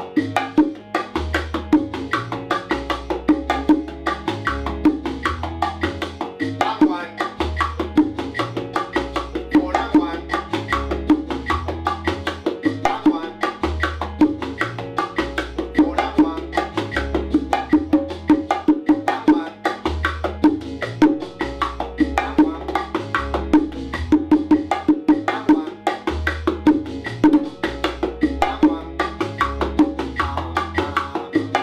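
Bongos played in the martillo (hammer) groove with added licks and variations, in quick steady strokes over a salsa backing track with clave, conga and a low bass line.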